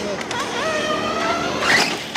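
A large-scale RC buggy's motor revving up under throttle as the buggy accelerates. The pitch rises, then holds steady for about a second.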